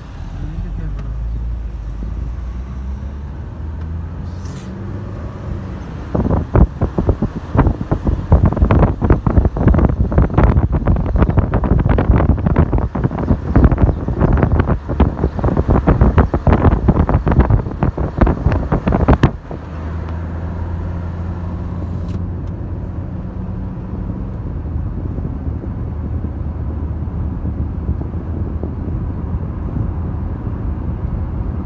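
Low, steady rumble of a car driving, heard from inside. From about six seconds in, wind buffets the microphone hard for some thirteen seconds with a loud, gusty battering, then cuts off, leaving the road rumble.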